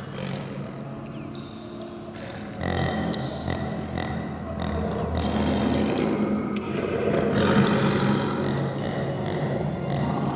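Big-cat roars and growls in a film soundtrack, low and rough, growing louder about two and a half seconds in, over a steady low tone.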